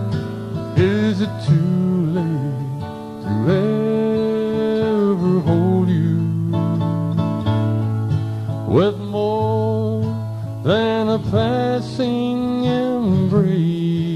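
A man singing a slow country love song, holding long notes that scoop up into pitch, over his own thumb-picked acoustic guitar.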